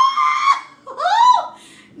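A woman's high-pitched scream, held until about half a second in, then a second, shorter shriek that rises and falls about a second later: a startled reaction to a live crab moving under her hand.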